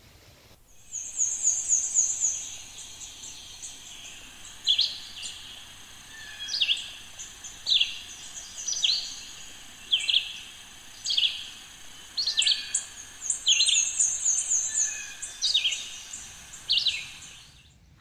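Songbirds singing: a short, down-slurred whistled note repeated every second or so, with runs of rapid high chirps near the start and again past the middle.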